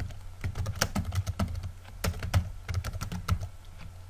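Computer keyboard typing: keys clicking in an irregular run of keystrokes as text is entered.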